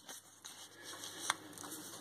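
Faint handling of a paper scratchcard and coin on a tabletop while a card is swapped, with one sharp click a little past halfway.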